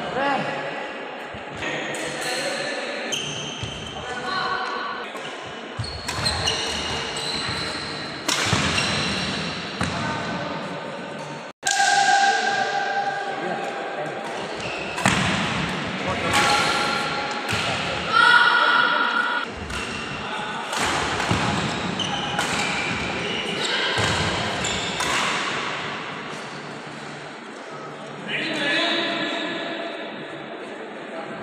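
Badminton rally in an echoing hall: repeated sharp racket strikes on the shuttlecock and players' footwork thumping on the court, with voices among them.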